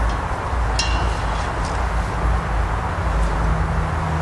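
Steady low outdoor rumble throughout, with a short, bright ringing clink about a second in and a few fainter ticks after, as aluminium tent poles are handled and pushed through the tent's fabric sleeves.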